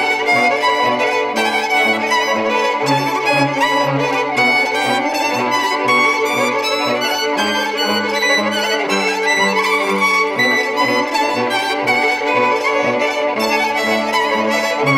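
Four multitracked violins playing an original quartet, three parts bowed and one plucked, over a steady rhythmic beat and a low pulsing bass line that lies below the violin's range.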